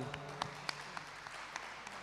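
Audience applauding, faint and tapering off.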